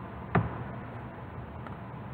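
A pause in the voice-over: a faint, steady hiss of background noise, with a single short click about a third of a second in.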